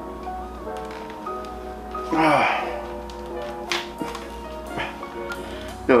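Background music with steady held notes. A short voice sound comes about two seconds in, and a few light taps come from a motorcycle helmet being handled and pulled on.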